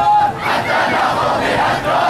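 A large crowd shouting and chanting together with many voices at once.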